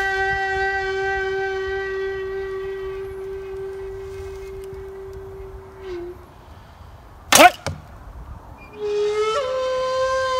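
A held wind-instrument note with its overtones, fading out about six seconds in. Then the release of a 55 lb mulberry-and-bamboo yumi: a sharp, loud snap of the bowstring, with a second smaller crack just after. Near the end a new wind-instrument note starts and slides up in pitch.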